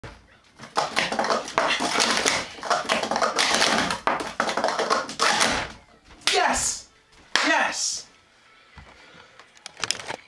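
Plastic sport-stacking cups clattering rapidly as they are slid and slapped up and down through a full cycle in just under five seconds. This is followed by two short excited voice cries.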